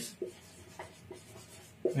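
A felt-tip marker writing on a whiteboard: a few faint, short strokes.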